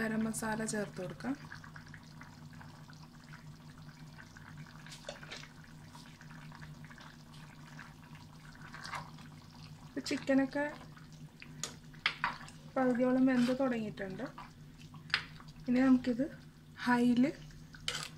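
A curry is stirred with a spoon in an earthenware pot: liquid sloshing and soft spoon clicks against the pot over a steady low hum. A woman's voice speaks in short bursts now and then.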